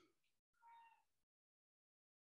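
Near silence, with one faint, short animal call about half a second in, then dead silence.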